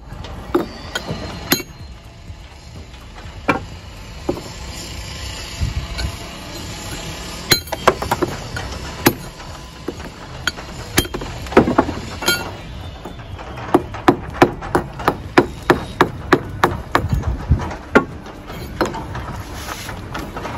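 Brick hammer striking a clay brick held in the hand, trimming it to shape: sharp knocks, scattered at first, then a quick run of about three a second in the last few seconds.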